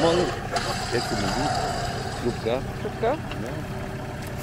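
Off-road vehicle engine idling steadily in the mud, with short snatches of voices over it.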